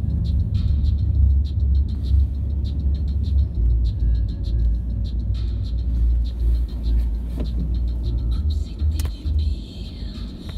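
Car moving slowly, heard from inside the cabin: a steady low engine and road rumble.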